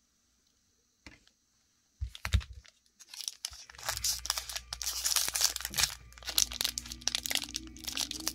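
Foil Panini Prizm card pack wrapper being picked up, then torn open and crinkled in the hands. After a near-silent start and some light handling, a dense, steady crackle of foil begins about four seconds in.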